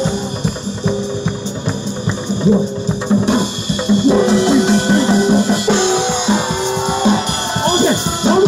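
Live Korean percussion ensemble playing loud and fast: a drum kit, Korean barrel drums and small handheld brass gongs (kkwaenggwari) struck together over held melody notes. A voice comes over the microphone near the end.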